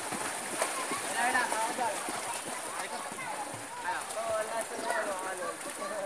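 Indistinct chatter of several people talking over one another, over a steady hiss.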